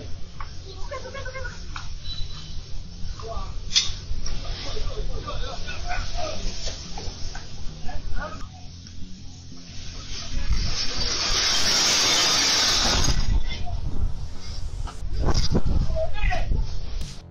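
Voices talking, then a loud, even hissing rush that starts about ten seconds in and lasts about three seconds, followed by more loud noise near the end.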